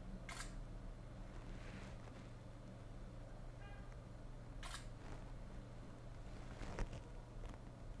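ZTE Blade A1 camera shutter sound played from the phone's speaker as pictures are taken, two short clicks about four seconds apart, faint over a low steady hum.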